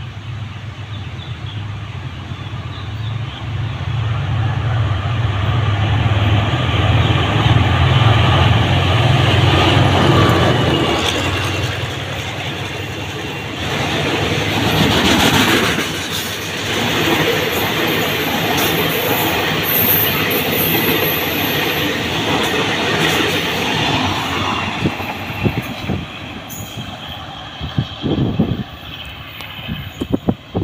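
A diesel-hauled container freight train runs through the station. The locomotive's low engine drone is strongest in the first ten seconds or so. The wagons follow, rolling past with wheel clatter over the rail joints and brief high wheel squeal, and the sound thins out near the end.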